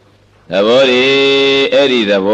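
A Buddhist monk's voice delivering a sermon in a chanted, drawn-out intonation after a short pause. About half a second in the voice starts and holds one pitch for most of a second before moving on.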